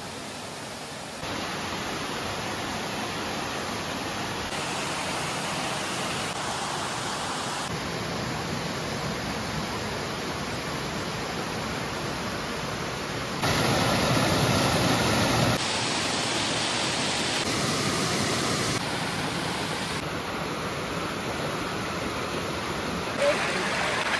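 Steady rushing roar of a waterfall and the water cascading over rock. Its level steps up and down abruptly several times and is loudest for about two seconds just past the middle.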